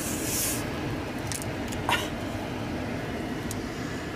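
Steady hum inside a parked car's cabin. Near the start there is a brief hiss as a soda bottle cap is twisted, and a few light clicks follow from the bottle and packaging being handled.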